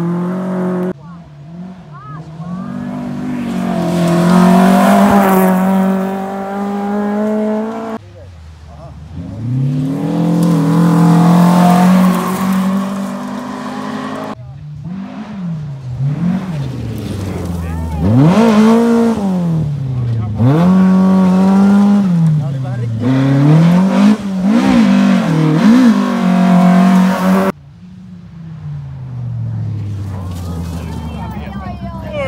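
Rally car engines revving hard on a gravel stage: each engine's pitch climbs as the car comes through, and in the middle part the pitch rises and drops sharply over and over, about once a second. The sound breaks off abruptly four times.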